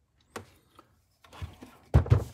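Handling noises: a single sharp click about a third of a second in, then rustling and a low thump near the end as the plastic-bodied portable power station is grabbed by its handle and shifted on the desk.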